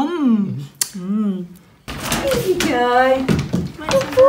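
A woman's voice making wordless sounds: two short vocal sounds with bending pitch, then, after a sudden change in the background, a longer drawn-out one.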